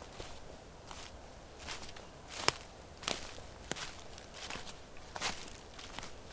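Footsteps of a person walking over dry grass at an even pace, each step a short crunch, with one sharper crack about two and a half seconds in.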